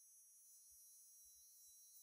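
Near silence: room tone in a pause between spoken sentences.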